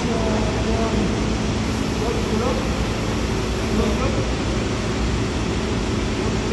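A loud, steady mechanical drone with a low hum, like machinery or ventilation running in the room, with faint voices talking under it.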